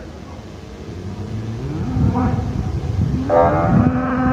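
Cow mooing: a shorter call about two seconds in, then a long, loud moo starting about three seconds in.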